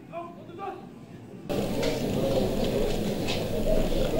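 A faint, distant man's voice, then about a second and a half in, a sudden jump to louder open-air crowd noise with a voice still mixed in.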